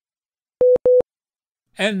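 Two short, identical electronic beeps in quick succession, a broadcast cue tone marking a segment break in the program. A man's voice starts speaking near the end.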